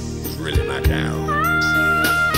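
Live band music: sustained low chords with two sharp drum hits, one about half a second in and one just under a second in. About a second and a quarter in, a lead line slides up and holds a high note.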